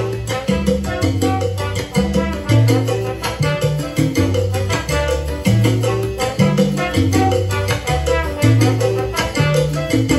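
Salsa band recording playing: a bass line moving in steady notes under busy percussion.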